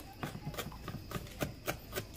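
Kitchen knife chopping leafy herbs on a plastic cutting board: a quick run of light taps, about seven of them, slightly uneven in spacing.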